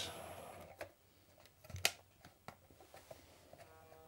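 A few faint clicks and taps from a hand handling a toy model train and its push-button controller, with one sharper click about two seconds in. A faint steady hum comes in near the end.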